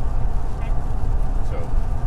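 A steady low rumble under the recording, with a couple of faint, brief spoken sounds.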